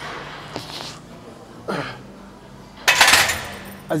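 A man straining through the last reps of a barbell overhead press: short grunts, then a loud, hissing breath about three seconds in.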